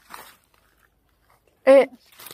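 A woman's short exclamation near the end, after a faint brief rustle at the start and a quiet stretch.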